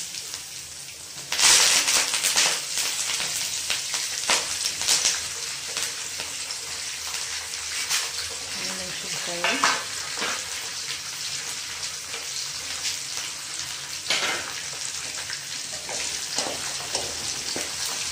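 Food sizzling in hot oil in a pan and being stirred, with scraping clicks through a steady hiss. The sizzle jumps sharply louder about a second and a half in and flares up again a few times.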